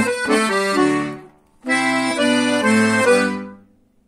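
Todeschini piano accordion playing a short phrase of held notes on its treble keys, in two runs with a brief break about a second and a half in, fading out shortly before the end.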